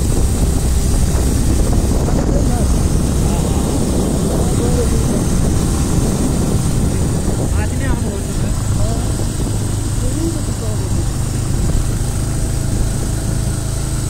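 Steady drone of a vehicle's engine and road noise, heard from inside the vehicle as it climbs a winding mountain road; the engine note steps higher about eight seconds in. Faint voices come through now and then under the drone.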